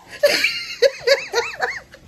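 A woman laughing: a quick run of about five short "ha" notes, each rising and falling in pitch.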